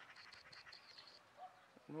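Near silence: quiet outdoor ambience with a faint, high-pitched chirping for about the first second.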